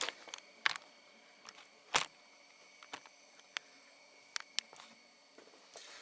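A few short, sharp clicks and taps at irregular spacing, the loudest about two seconds in: light handling of tools and parts on a workbench.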